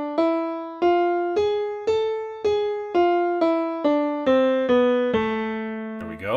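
Piano playing an A harmonic minor scale, one note about every half second. It climbs through the raised seventh, G sharp, to the top A about two seconds in, then comes back down with the G sharp kept and settles on a held low A near the end.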